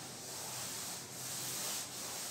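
A cloth wiping chalk off a blackboard: a steady rubbing hiss that swells and dips with each wiping stroke, about once a second.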